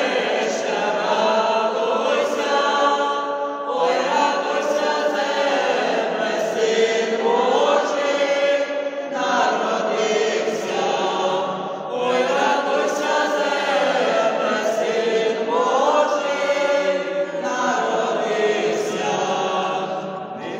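Small mixed ensemble of women's and men's voices singing a Ukrainian Christmas carol (koliadka) unaccompanied, in sung phrases with brief breaks between them.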